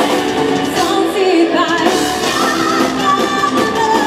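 Live symphonic metal band playing, with a female lead vocalist singing over distorted electric guitars, bass, drums and keyboards.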